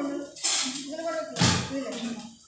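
A voice chanting temple mantras in a sustained, intoned recitation. Two short hissing bursts come about half a second and a second and a half in.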